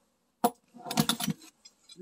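Metal clinking and rattling from handling a drill and its steel drill bits, not from drilling: a sharp click, then a short jangle about a second in and a few faint ticks near the end.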